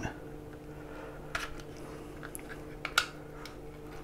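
Faint clicks and scrapes of a plastic LED torch casing being pried apart by hand, with a sharper click about a second and a half in and another near three seconds, over a low steady hum.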